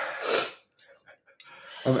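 A man's loud, breathy sigh, two pushes of air in about half a second, reacting to the burn of very spicy chili food.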